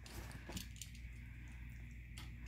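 Faint clicks and small crunches of a chihuahua gnawing on a tiny bone, over a low steady hum.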